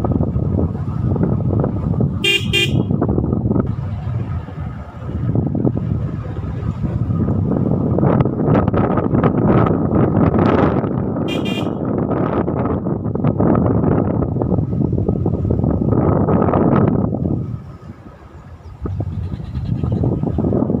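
Wind rushing over the microphone with road noise from a moving motorcycle. A vehicle horn beeps briefly about two seconds in and again about eleven seconds in. The rushing drops away for a moment near the end.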